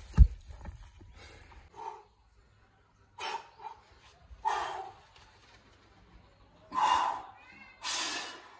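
A heavy natural stone dropped onto dirt ground, landing with a single loud thud just after the start. Later come four short, breathy bursts.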